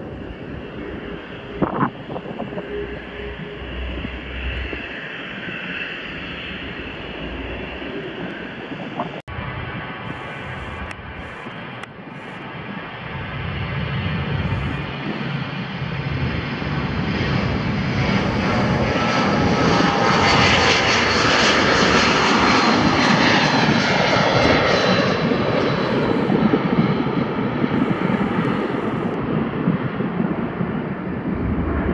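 Four-engined Avro RJ85 jet airliner taking off. Its turbofans build to full power, loudest and fullest about two-thirds of the way through as it passes and climbs away, with a whining tone over a wide rush of engine noise. Before that, for the first third, an Embraer jet runs more quietly on the runway.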